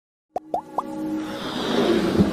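Electronic intro sting for an animated logo: three quick rising plops about a third of a second in, then a synth swell that builds in loudness.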